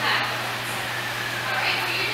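Indistinct speech, words that were not transcribed, near the start and again in the second half, over a steady low hum.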